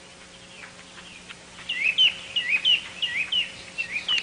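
Bird chirping on a cartoon soundtrack: a run of short, repeated chirps, about three a second, that get louder a little under halfway through, over a faint steady hum.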